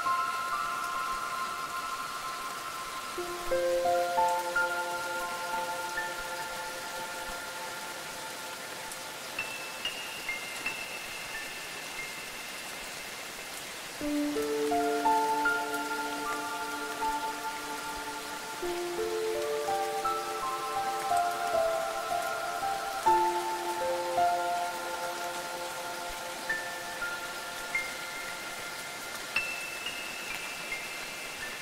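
Steady rain falling, with a slow melody of bell-like ringing notes laid over it. The notes come in clusters that let each tone ring on: about three seconds in, around the middle, and again near the end.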